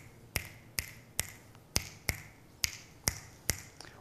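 A man snapping his fingers about eight times in an uneven, swung rhythm, roughly two snaps a second.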